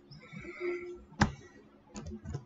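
A single sharp computer keyboard keystroke about a second in, following a faint, wavering higher-pitched sound, over a low steady hum.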